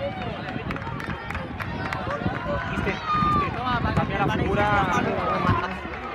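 Many overlapping voices calling and shouting at a youth football match, several of them high-pitched, none clear enough to make out as words.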